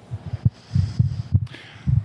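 A series of low, dull thumps at irregular spacing, with a faint hiss behind them.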